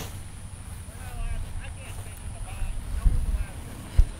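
Wind rumbling on the microphone, with faint distant talking in the middle and two sharp bumps of handling noise, one about three seconds in and a louder one at the end.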